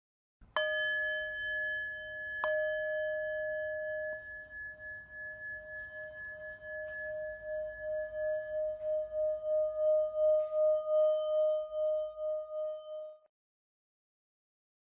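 A metal singing bowl struck twice, about two seconds apart, ringing on with one steady tone. The tone pulses and swells louder, then cuts off suddenly near the end.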